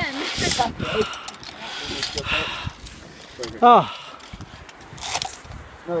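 Scattered people's voices, with one loud call that rises and falls a little past halfway. Short rushes of hiss come through between them.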